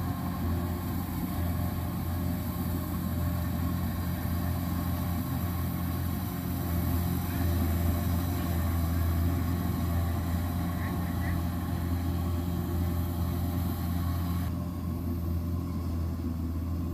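Kubota DC-93 combine harvester's diesel engine running steadily under load while cutting rice, a low even hum. About a second and a half before the end the sound shifts slightly as the machine is heard from farther off.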